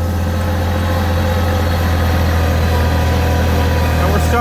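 Kioti CK2610 compact tractor's three-cylinder diesel engine running at full throttle on its stock fuel-screw setting, lugging under load on a steep uphill as its revs sag.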